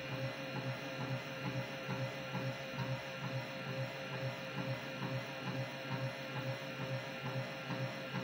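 An AC gearmotor coupled to a DC motor runs with a steady, slightly wavering whine and a regular knock about twice a second. The knock comes from the unit wobbling against the table.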